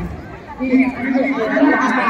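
People chatting close by, with speech picking up about half a second in after a brief lull.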